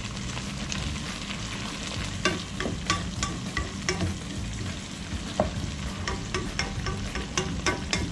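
Chopped vegetables and green chilies sizzling steadily as they fry in oil in a pot, with a spatula scraping and clicking against the pot again and again as they are stirred.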